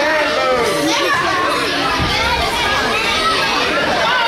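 Wrestling audience calling out and shouting, many overlapping voices with children's among them.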